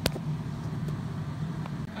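A single sharp click at the very start, then a steady low mechanical hum.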